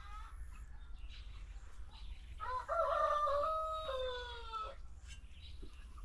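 A rooster crowing once: a single long crow of about two seconds a little past the middle, ending on a slightly falling note.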